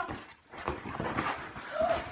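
Cardboard box being handled and its flaps pulled open: faint scattered rustles and light knocks, with one short rising-then-falling vocal sound near the end.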